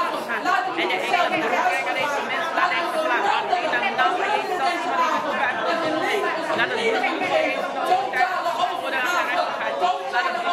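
Several people speaking aloud at once, their voices overlapping into a continuous babble in a large hall.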